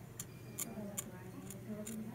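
Light, sharp clicks of a metal universal curet's tip tapping and scraping on the plastic teeth of a dental typodont, about five in two seconds at an uneven pace.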